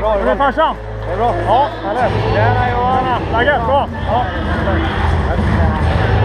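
An arena public-address voice echoing through the ice hall during pre-game introductions. Under it a low steady hum gives way about two seconds in to a rumbling background of crowd noise.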